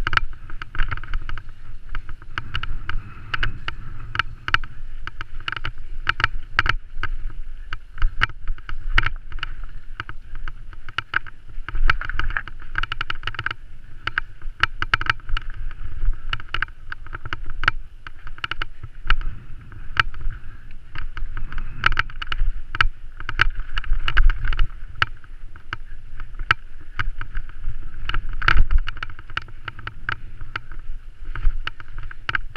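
Mountain bike ride heard through a rider-mounted action camera: a muffled rumble of tyres and wind with frequent sharp clicks and knocks as the bike and camera jolt over a rough, muddy grass trail.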